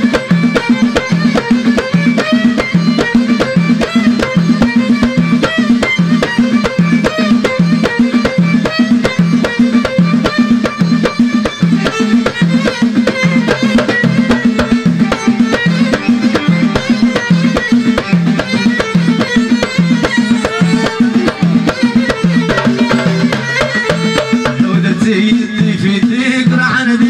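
Live Moroccan Amazigh folk (chaabi) music. Hand drums, a goblet drum and frame drums, beat a fast, steady rhythm, with a wavering melodic line above and a repeating low two-note figure beneath.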